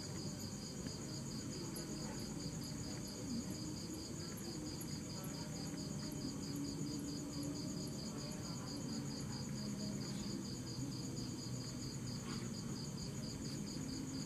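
Crickets chirping in steady, rapid pulsing trills at two pitches, one higher than the other, over a low background hum.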